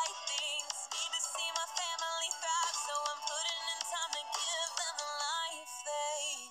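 Music: a woman rapping a fan-made anime rap cypher over a beat. The track sounds thin, with almost no bass.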